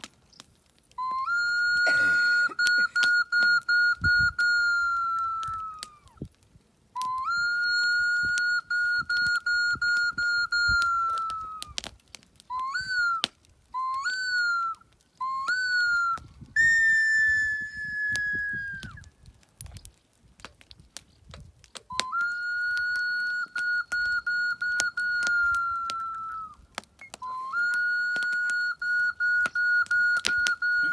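A hand-held ceremonial whistle blown in long, steady, high single-pitch notes of about five seconds each. Midway come three short chirps that bend upward, then one slightly higher note that sags in pitch.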